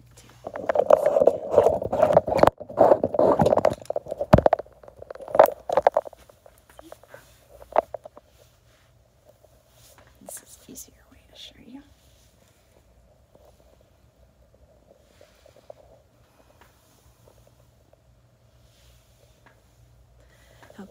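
Phone being picked up and carried, its microphone rubbed and knocked by fingers: loud scraping handling noise with sharp knocks for the first six seconds, then a few fainter taps and rustles that die away by about halfway, leaving a faint steady hum.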